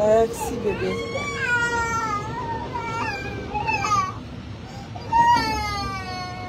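A young child crying in several drawn-out, high-pitched wails that rise and fall.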